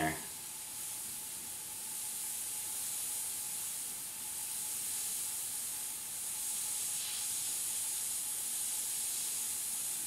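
Iwata HP airbrush spraying paint: a steady hiss of air that swells and eases slightly a few times as the trigger is worked.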